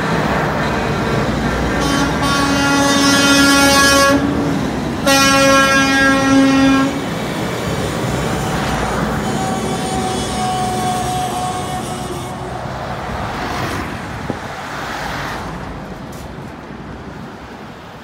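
Semi-truck tractors driving past with their diesel engines running, while an air horn sounds two long blasts of about two seconds each, starting about two seconds in. A fainter, higher horn note follows around ten seconds in, and the traffic sound fades toward the end.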